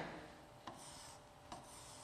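Faint rubbing of a pen on an interactive whiteboard's screen as words are underlined, with two light taps of the pen on the board.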